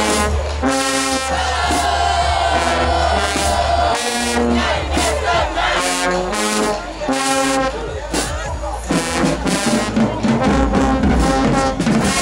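Marching band brass section with sousaphones playing loud, short held chords with brief breaks between them.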